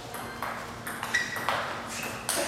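Table tennis rally: the ball clicks sharply off the rackets and the table several times, roughly every half second.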